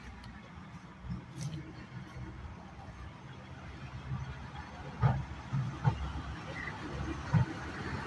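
SOMAFEL diesel shunting locomotive 1210 approaching and passing close with flat wagons, its engine rumble growing louder. From about five seconds in, sharp knocks sound out, several in a row.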